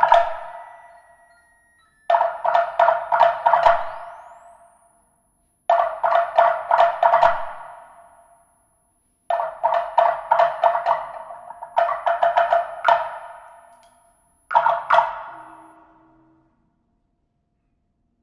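Percussion ensemble playing rapid bursts of sharp wooden strikes. Five separate flurries each ring away before the next begins, and the last dies out into silence near the end.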